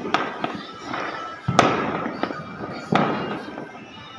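Firecrackers going off, a string of sharp bangs, each followed by a rolling echo; the loudest come about one and a half and three seconds in.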